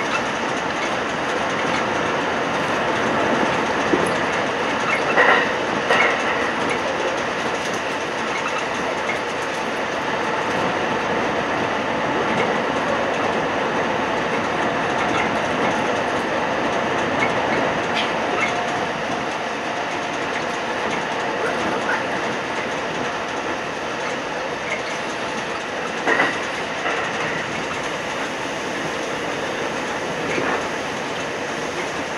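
Kintetsu Nara Line rapid express train running at speed through a tunnel, heard from the front of the train: a steady rumble of wheels on rail. Sharp wheel clacks come about five and six seconds in, and again near the end.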